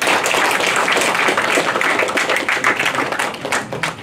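A small audience applauding, many hands clapping together.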